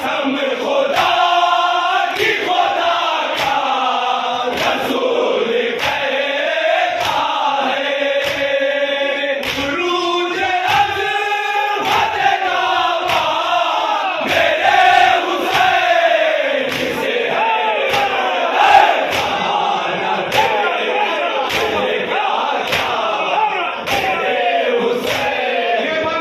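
Noha sung in chorus by a crowd of men, with the rhythmic slaps of hands beating on chests (matam) keeping time, a little more than one slap a second.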